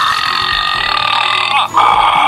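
A Grumblies electronic plush toy playing a long burp sound effect through its small speaker, with a short break near the end.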